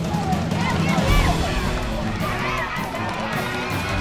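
Background music with steady low bass, under a crowd of spectators shouting and cheering. Many high voices call out from about a second in.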